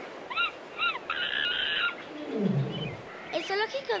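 Jungle animal calls: two short rising-and-falling calls, a dense burst of squawking about a second in, then a low call falling in pitch about two seconds in.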